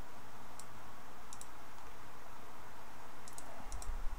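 Computer mouse clicks over a steady hiss: a single click, then a pair a second later, and a quick run of several clicks near the end, with a low bump as it closes.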